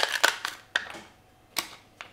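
Wide plastic heat-shrink tube crinkling and crackling in the hands as it is opened and a LiPo battery pack is pushed into it: a few short crackly clicks, with a quiet moment a little past the middle.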